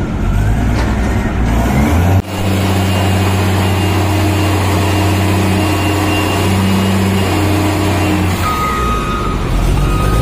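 Hyster reach stacker's diesel engine running steadily while it handles a shipping container, with the engine note changing abruptly about two seconds in. Near the end a steady high tone joins it.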